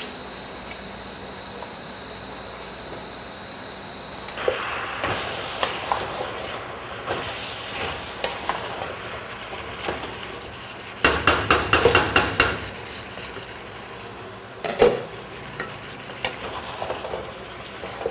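Chicken curry with potatoes sizzling in a pot while a wooden spoon stirs it, after a few seconds of steady faint hum with a high whine. About eleven seconds in comes a quick run of loud scraping knocks of the spoon against the pot, and a single knock follows a few seconds later.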